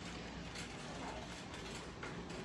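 Metal wire shopping cart rattling as it is pushed along, its wheels rolling over a hard store floor.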